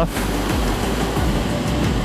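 Motorcycle riding at highway speed: steady, dense wind and road noise.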